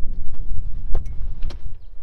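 A few sharp knocks from a telescoping ladder as a person climbs its rungs into a rooftop tent, over a low rumble of wind on the microphone.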